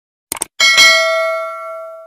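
A quick double mouse click, then a bell chime that starts just after half a second in and rings on, fading away over about a second and a half: the click-and-bell sound effect of a subscribe-button animation.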